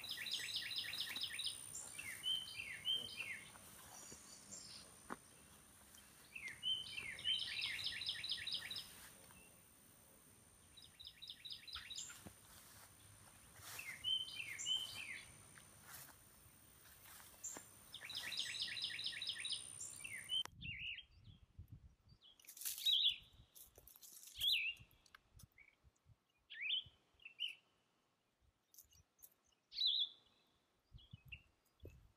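A songbird singing the same phrase again and again, a few slurred notes then a quick trill, about every six seconds, over a thin steady high tone. About two-thirds through, the background drops away suddenly, leaving scattered chirps and a few sharp knocks.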